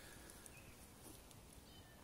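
Near silence: faint outdoor room tone.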